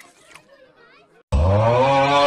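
A loud, drawn-out 'AUGHHH' yell, the meme scream, cutting in suddenly about a second and a half in after faint background sound and held on steadily.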